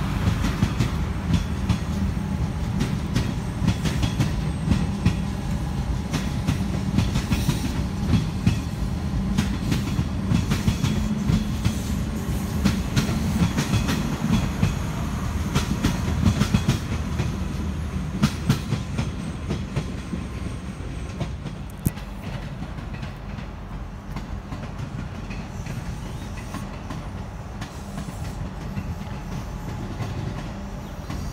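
Electric suburban trains running past on the track, their wheels clattering rhythmically over the rail joints along with the rumble of the cars. The clatter is loudest for the first two-thirds, then eases off somewhat.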